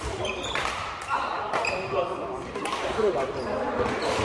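Badminton rackets striking a shuttlecock during a doubles rally, sharp hits about a second apart, with footsteps on the wooden court and voices echoing in a large hall.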